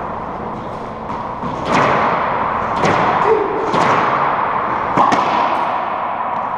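Racquetball rally: the rubber ball cracking off racquets and the court walls, four sharp hits about a second apart, each ringing out in the enclosed court's echo.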